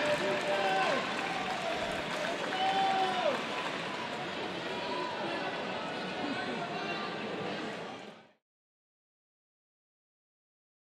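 Arena crowd ambience: indistinct voices and chatter echoing in a large hall, cutting off suddenly about eight seconds in.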